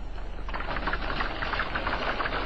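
Rapid, even mechanical clattering that sets in about half a second in, over a low steady hum.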